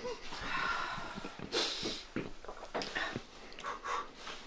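A person drinking from a mug: breathy sipping and nose breathing, with one stronger gust of breath about one and a half seconds in and a few small clicks of the mug.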